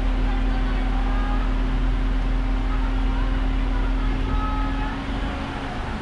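Car engine idling, heard from inside the cabin: a steady low rumble with a steady hum that cuts off near the end as the car creeps forward.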